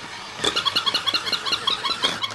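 Battery-powered toy puppy's small motor running, its gears clicking rapidly, about nine clicks a second, starting about half a second in.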